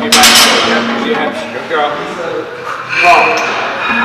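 A voice over background music, with a sharp metallic clink at the start and another about three seconds in that rings briefly.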